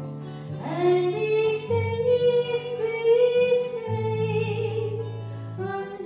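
A woman singing a slow song to her own acoustic guitar, long held notes over chords that change every second or two.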